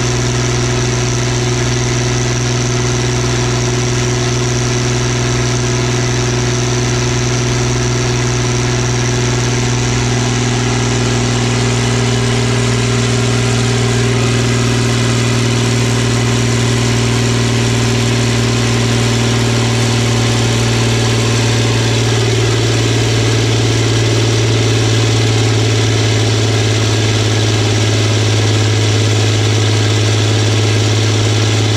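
John Deere tractor diesel engine running steadily under load on a dynamometer, its pitch easing slightly lower and its sound growing a little louder in the second half as the load builds.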